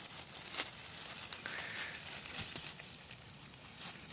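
Dry grass and leaf litter rustling and crackling as a hand works through it to pull a birch bolete from the ground, with a few crisp clicks and snaps.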